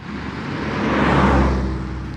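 A car passing by: its engine and road noise swell to a peak about a second and a half in, then start to fade.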